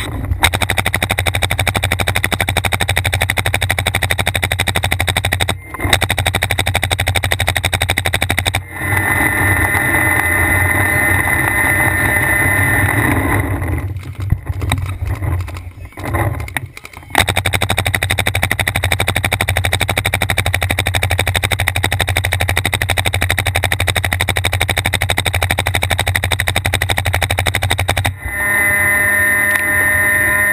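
Paintball marker firing in long, rapid streams of shots, a fast, dense rattle broken by short pauses about six and nine seconds in and a choppier stretch midway, stopping shortly before the end.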